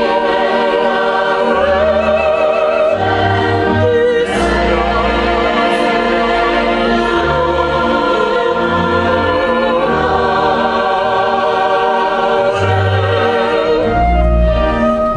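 Mixed choir with children's voices singing a slow sacred piece with chamber orchestra, in sustained chords over a bass line that moves note by note. The sound breaks off briefly about four seconds in, then resumes.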